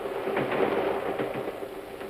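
Steady crackling hiss with a faint steady tone underneath, heard on an old radio broadcast recording between two lines of a melodrama.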